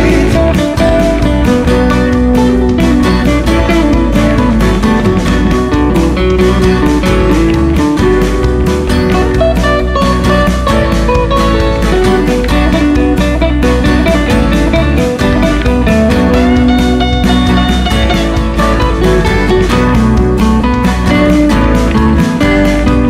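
Acoustic band playing an instrumental passage without vocals: several acoustic guitars strummed in a steady, driving rhythm, with a piano keyboard.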